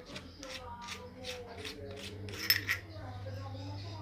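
Adjustment turret of a 6-24×50 rifle scope clicking as it is turned by hand, a regular run of short clicks about three a second, with one sharper click about two and a half seconds in.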